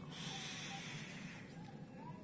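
A long drag on a vape with a rebuildable dripping atomizer: a steady airflow hiss that fades out after about a second and a half.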